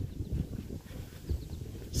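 Low, uneven rumble of wind and handling on a handheld phone microphone, with soft thuds of footsteps on grass as the person filming walks forward.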